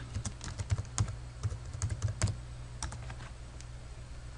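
Typing on a computer keyboard: a quick run of key clicks for about two seconds, then a few scattered clicks.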